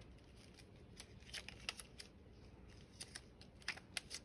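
Faint, scattered small clicks and rustles of hands handling a plastic case of alphabet letter stickers while picking out a letter.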